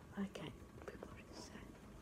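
Faint whispering and quiet speech, in short broken snatches with a brief hiss.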